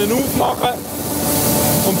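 Steady drone of grain silo machinery, holding several even tones, with a brief clatter about half a second in.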